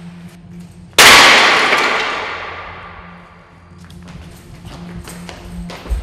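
A wooden chair crashing to the ground after a long fall: one loud crash about a second in that echoes and dies away over a couple of seconds.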